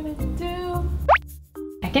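Light background music with held notes, then about a second in a quick cartoon 'pop' sound effect that slides sharply up in pitch, followed by a short tone just before a voice begins.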